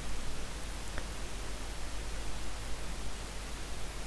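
Steady hiss and low hum of the recording microphone and room, with a faint click about a second in.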